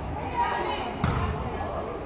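A volleyball being struck during a rally, one sharp smack about a second in that echoes in a large gym, with voices around it.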